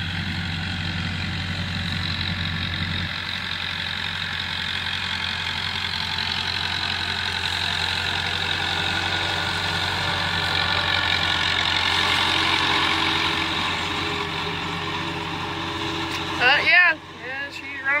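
Massey Ferguson 165 tractor running steadily while pulling a Kuhn GMD 600 disc mower through hay. It grows a little louder around the middle as the tractor passes close. A man's voice comes in near the end.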